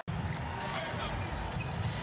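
A basketball dribbled on a hardwood arena court, a few bounces over a steady low arena hum.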